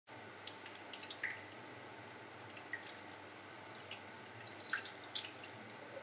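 Water from a plastic bottle trickling and dripping onto a phone's glass screen and into a plastic tub. It is faint, with scattered separate drips and small splashes, the clearest about a second in and again near five seconds.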